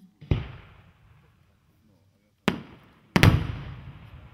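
A 5-inch brocade crown aerial shell being fired: a heavy thump from the mortar's lift charge about a quarter second in. Then come two sharp bangs near the end, the second the loudest, as the shell bursts, each fading out in a long rumble.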